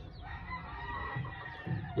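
One faint, long bird call, drawn out for about a second and a half.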